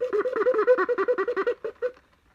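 A young girl giggling, a quick run of high-pitched laughs of about eight a second that stops just before the end.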